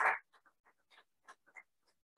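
Applause from the room cuts off just after the start, followed by a string of short, soft rustles and taps from things being handled close to the microphone.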